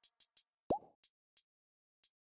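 Tail of a trap beat with the rest of the track gone: a few crisp hi-hat ticks, spaced ever wider apart, and one short electronic plop with a quick upward pitch sweep about two-thirds of a second in, the loudest sound.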